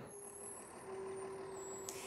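Faint city street background: a steady low hum of traffic, with a brief click near the end.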